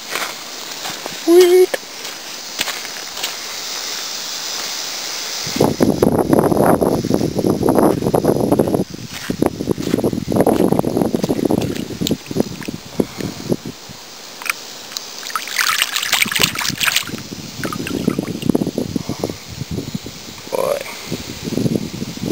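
A hand swishing a stone arrowhead in shallow river water to rinse it: irregular splashing and sloshing starting about five seconds in, after a few seconds of steady hiss.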